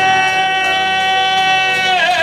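A male singer holding one long, high sung note through a microphone, steady in pitch, over instrumental accompaniment.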